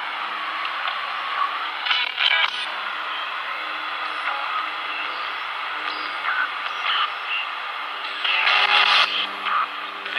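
Spirit box sweeping through radio stations: a steady static hiss with louder snatches of sound about two seconds in and near the end, the last taken as a spirit answer of "thank you".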